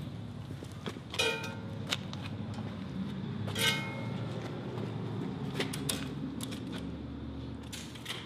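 Tape measure being handled while measuring: two short whirring sounds and a few sharp clicks over a steady low hum.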